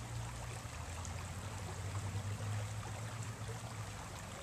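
Steady rush of flowing river water, with a steady low hum underneath.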